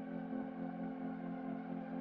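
Background music: a steady, sustained ambient chord.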